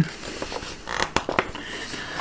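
A magazine page being turned by hand: paper rustling, with a few sharp crackles about a second in.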